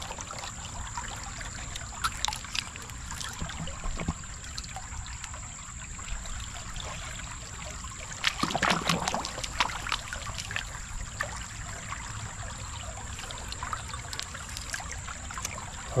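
Shallow creek water sloshing and splashing as a gloved hand sweeps back and forth through it over gravel, with small clicks of stones. There is a louder stretch of splashing about eight seconds in.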